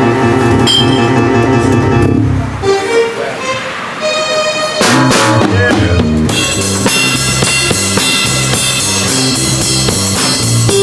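A live band playing: drum kit and electric guitar. The sound thins out about three seconds in, and about five seconds in the full band comes in, with steady drum hits.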